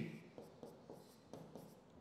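Faint, short strokes and taps of a pen writing letters on the glass of an interactive display board.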